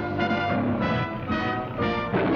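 Orchestral opening-title music led by brass, playing short chords about every half second.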